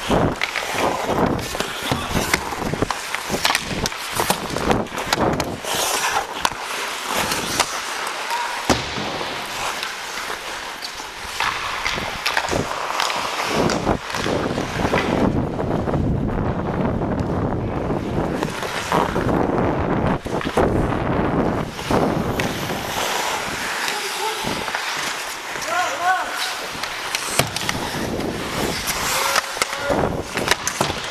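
Ice skate blades scraping and carving on the ice, heard close up from a skater's helmet, with many sharp clacks of sticks and puck throughout and voices calling out now and then.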